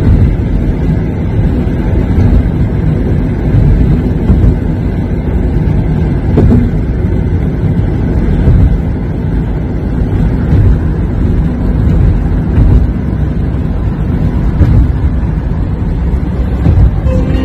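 Steady road and wind rumble inside a Toyota Corolla's cabin while it drives at highway speed.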